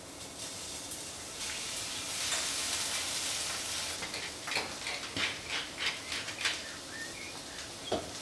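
Chanterelles frying in oil in a hot pan, the sizzle swelling about a second and a half in as a knob of butter goes in, then easing. From about halfway, a run of short crackling clicks, about three a second, as a pepper mill is ground over the pan.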